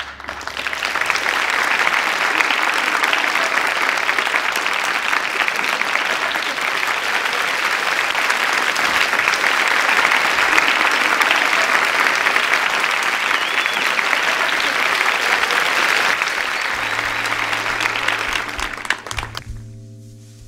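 Audience applause after a live band's song, starting abruptly and staying full for most of the stretch before dying away near the end. Steady held instrument notes come in under the clapping shortly before it fades.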